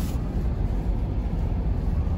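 Steady low rumble of a truck's engine and tyres heard from inside the cab while driving on a snow-covered road, with a brief hiss at the very start.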